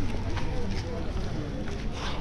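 People's voices talking, with a few short scuffs and knocks of footsteps on concrete as they walk.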